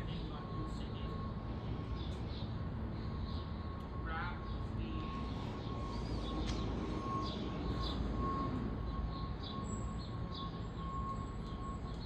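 Outdoor railway-platform ambience with no train passing: a steady low rumble, a faint steady high whine running through most of it, and a few faint short chirps.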